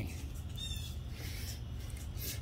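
A single short, faint bird chirp about two-thirds of a second in, over a steady low background hum.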